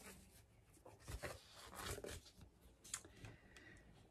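Faint rustling of a picture book's pages being handled and turned: a few brief, soft rustles against near silence.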